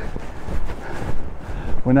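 Wind buffeting the camera microphone: a steady low noise with no distinct events.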